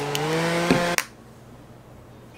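Small handheld battery fan whirring with a steady hum; its pitch rises a little about a quarter second in, then the sound cuts off suddenly about a second in, leaving faint room tone.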